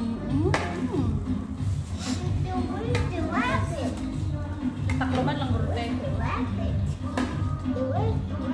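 Background music with a crowd of voices, children among them, talking and calling out.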